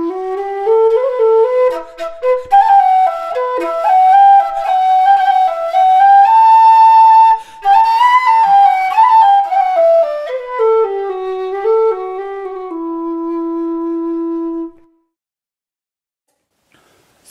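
Solo low whistle playing a flowing folk melody ornamented with slides and trills. It climbs to its high notes mid-phrase, comes back down, and ends on a long held low note that stops shortly before the end.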